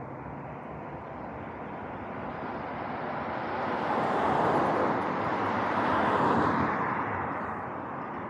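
Two cars driving past in quick succession, their tyre and road noise swelling, peaking about four and a half and six seconds in, then fading.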